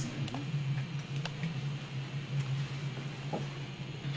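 Steady low hum with a few light, sharp clicks from small plastic counting bears being handled and set down on a tabletop.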